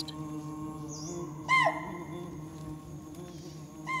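Two short, sharp alarm calls of chital (spotted deer), each rising and then falling in pitch, a little over two seconds apart, over a low steady hum. The calls warn the forest of a predator.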